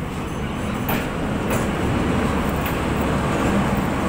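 PNR diesel locomotive 2540 rolling slowly past the platform with its passenger coaches: a steady engine rumble with wheel noise, growing slightly louder as it comes close, with a few short clicks in the first three seconds.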